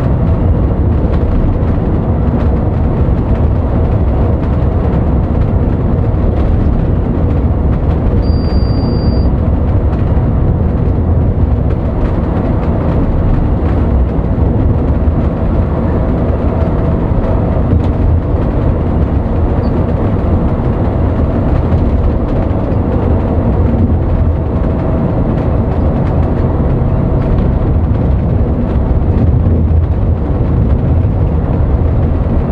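Intercity coach cruising on a highway: a steady low engine and road rumble heard inside the driver's cab. A short high beep sounds about eight seconds in.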